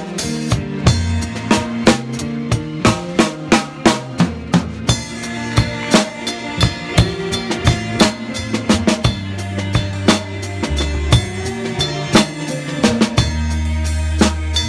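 Drum kit played live with a band: a steady beat of snare and bass drum strikes with cymbals over sustained bass notes. It is heard close up, from the drummer's seat at the kit.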